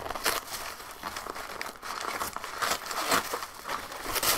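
Cardboard mailing box being forced open by hand, its taped flaps tearing and the cardboard crinkling and scraping in short, irregular rustles.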